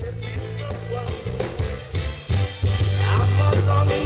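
Live reggae band playing, with a heavy bass line up front; the music gets louder about two-thirds of the way through.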